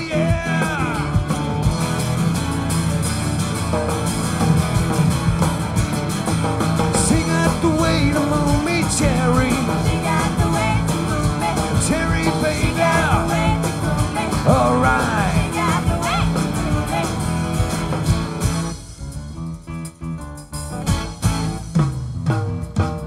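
Live rock band playing, with electric organ, guitar, bass, drums and backing vocals. About nineteen seconds in the band drops down abruptly to a much quieter, sparser passage.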